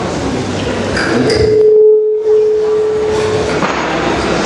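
Crowd chatter in a large room, cut through by a single loud, steady pure-sounding tone that starts about a second in and holds for about two seconds.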